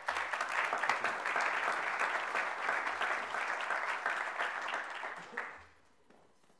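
Audience and panel applauding, a dense spell of clapping that fades out near the end.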